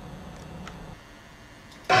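Faint room tone with a low hum; near the end, loud electric-guitar rock music cuts in suddenly.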